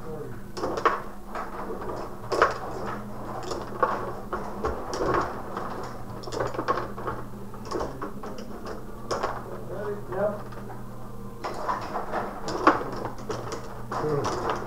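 Rod-operated table hockey game in play: irregular clicks and clacks of the metal control rods being pushed, pulled and twisted, and of the flat players striking the puck, over a steady low hum.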